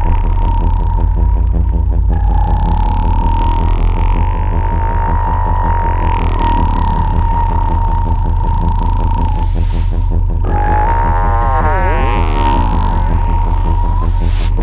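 Electronic drone from a modular synthesizer: sampled sounds fed through a phaser in feedback mode while it is being modulated. A fast, even pulsing low rumble runs under a held high tone. The phaser's sweeps swirl through it, bending most strongly about eleven to thirteen seconds in.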